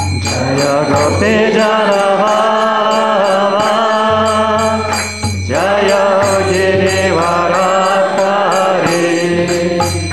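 A man singing a devotional kirtan chant in long melodic phrases while keeping time on small brass hand cymbals (karatalas), with short breaks in the singing about one and five seconds in.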